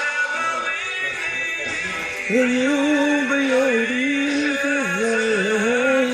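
A recorded song playing: instrumental backing, then from about two seconds in a solo singer comes in with a long, wavering melodic line that settles into a held note near the end.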